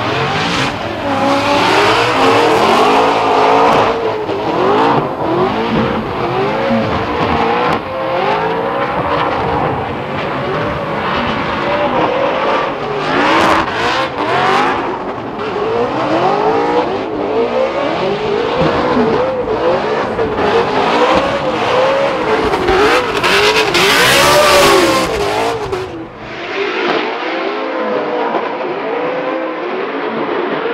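Two drift cars in a tandem run, their race engines revving up and down hard at high rpm over tire squeal. About four seconds before the end the sound turns thinner and more distant.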